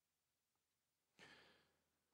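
Near silence, with one faint, short breath at the microphone a little past halfway.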